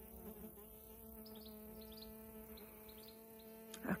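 A flying insect buzzing close to the microphone, a steady low hum holding one pitch. A few faint high chirps sound in the middle.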